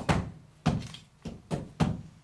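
A run of five or six dull thumps in two seconds, unevenly spaced, each dying away quickly.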